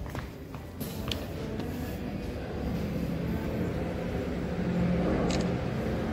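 Steady low background hum and rumble with a few faint clicks, and no speech.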